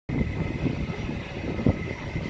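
Steady low outdoor rumble with a faint high whine running through it, and a single short thump near the end.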